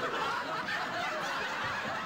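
Stifled snickering and chuckling from teenagers holding back laughter.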